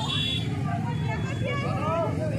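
A motorcycle engine idling steadily close by, with crowd voices over it.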